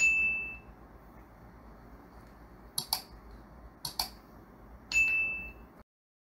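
Subscribe-button animation sound effects. A bright chime dings at the start, then come two quick double mouse clicks about three and four seconds in, and a second ding about five seconds in, after which the audio stops.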